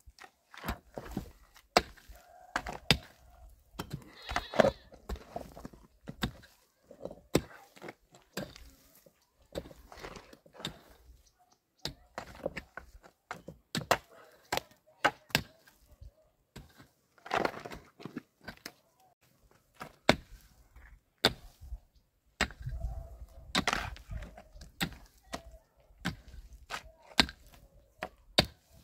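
Long-handled shovel and pick digging and scraping in stony soil and rubble: irregular sharp knocks and cracks of metal striking stone.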